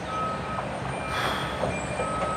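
Reversing alarm of a construction vehicle beeping about once a second, each beep a steady tone about half a second long, over a low steady background of site machinery.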